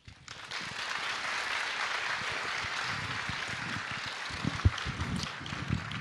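Audience applauding steadily, starting just after a spoken thank-you, with a few low thumps near the end.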